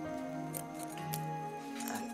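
Background film score music: sustained held notes with a few light percussive strikes.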